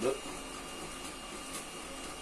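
A 3D printer running steadily in the background: an even whir with a few thin, steady tones.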